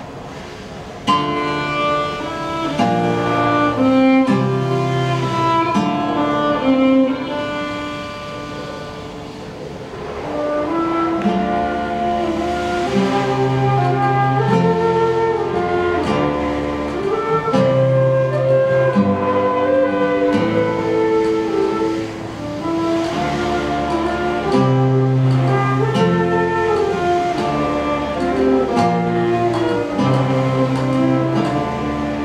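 Small acoustic ensemble playing a slow instrumental piece, with violin, flute and guitar among the instruments. The music enters suddenly about a second in.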